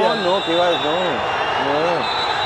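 A man speaking over the steady noise of a stadium crowd.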